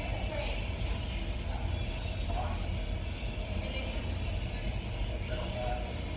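Restaurant background noise: a steady low rumble under faint distant voices.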